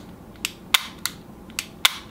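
Dry fire of a CZ P07 double-action pistol on an empty chamber: each long double-action trigger pull drops the hammer with a sharp click, with no need to rack the slide between pulls. Four clicks come in two close pairs, the last one the loudest.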